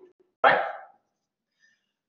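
A man's voice says one short word, "right?", about half a second in, then near silence.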